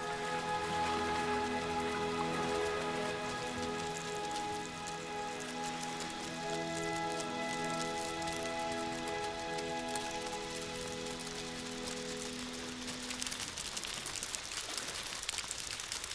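Background music of held, sustained chords that fades out a few seconds before the end, over a dense rain-like pattering: the clatter of thousands of Christmas Island red crabs scrambling over rock and sand. The pattering comes to the fore once the music has gone.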